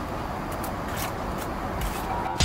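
A few light scrapes and clicks of a steel trowel buttering mortar onto a brick, over a steady background hum.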